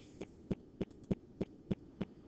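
Faint, regular clicking, about three clicks a second, with a few extra clicks in between.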